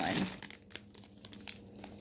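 Clear plastic zip-top bags of wax melts crinkling faintly as they are handled and one is picked up, with a small click about one and a half seconds in.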